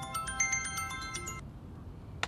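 Mobile phone ringtone: a quick melody of short, bright, marimba-like notes that stops abruptly about one and a half seconds in as the call is answered.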